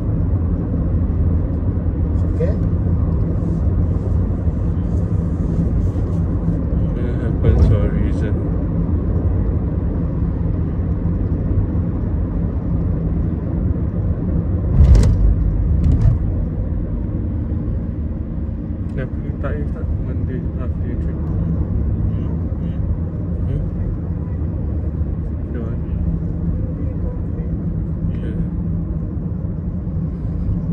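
Steady low rumble of road and engine noise inside a moving car's cabin, with a brief bump about a quarter of the way in and a louder one around halfway.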